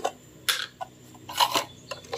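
A small metal spoon scraping and clicking in a plastic jar of MSG crystals: a couple of short scrapes about half a second in, then a quick cluster around a second and a half.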